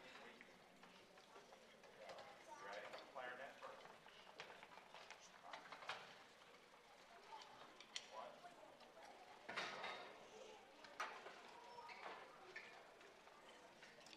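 Near silence in a large hall: faint murmuring voices and scattered small knocks and clicks, a little louder about ten seconds in.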